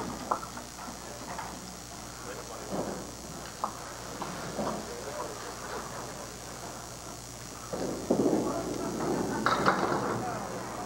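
Candlepin bowling alley sound: faint background voices and a few scattered knocks. Then, from about eight seconds in, a louder rolling rumble of a ball down the lane, ending in a clatter of candlepins being struck.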